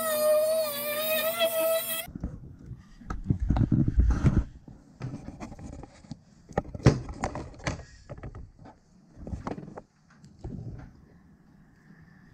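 Handheld rotary tool with a cutoff disc cutting a thin metal tube: a high, steady whine that stops abruptly about two seconds in. After it come scattered clicks and knocks of small tools and plastic parts being handled on a workbench.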